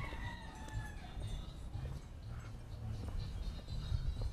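A rooster crowing faintly: one drawn-out call that slowly falls in pitch and fades out about a second in.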